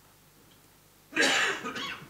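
Near silence, then about a second in a short, sudden vocal sound from a man close to the microphone, breathy and under a second long.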